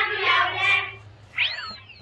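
A single short cat meow about one and a half seconds in, rising then falling in pitch, after a sung line ends about a second in.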